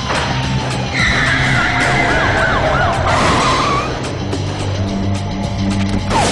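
Car tyres squealing in a wavering high screech from about a second in until about four seconds in, during a car chase, over background music with a steady low drone.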